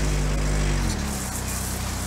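Patrol car engine running as the car drives slowly by, steady and low, its pitch dipping slightly about a second in.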